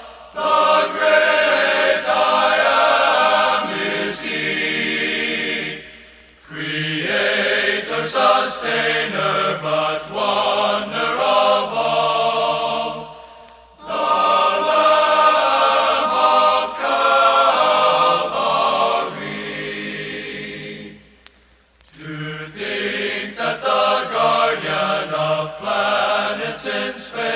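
All-male choir singing a sacred song in long phrases, with a brief pause between phrases about every seven seconds.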